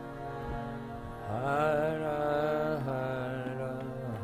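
Harmonium holding steady sustained notes, with a man's singing voice coming in about a second in on one long held, slightly wavering note over the drone.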